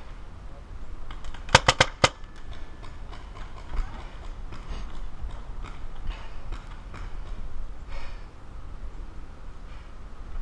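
Paintball markers firing: a quick string of four sharp pops in about half a second, about a second and a half in, then scattered fainter pops through the rest.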